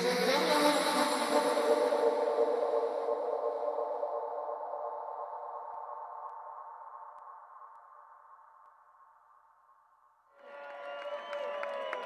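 A sustained electronic synthesizer chord that starts suddenly and slowly dies away over about ten seconds, its high end fading first. About ten seconds in, the crowd breaks into cheering and whistling.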